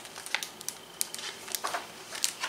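Pages of a large picture book being turned and handled: a quick run of short paper crinkles and taps.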